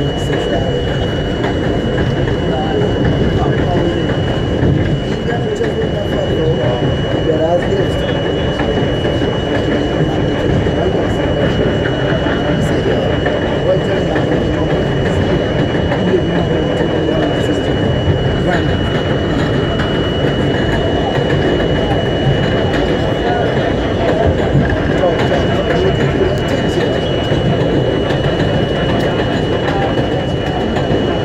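R42 subway train running along elevated track: a steady rumble of wheels on the rails, with a constant high whine above it.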